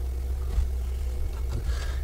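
A steady low hum with nothing else prominent over it.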